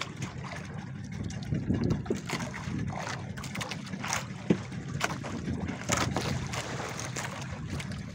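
A small fishing boat's engine running steadily, with water sloshing and splashing along the hull and scattered knocks and splashes as fish are hauled in over the side on a hand line.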